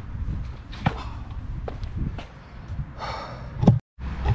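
A shaken man breathing out heavily after a fall from a ladder, with a few knocks and footsteps and a low wind rumble on the microphone; a sharp knock comes just before the end.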